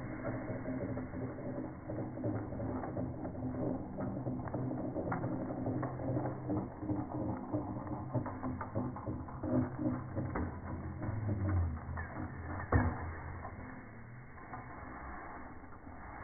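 Zip line trolley rolling along its steel cable: a steady rolling rumble with a low hum and light rattling clicks. A single sharp knock comes near the end, after which the sound falls quieter.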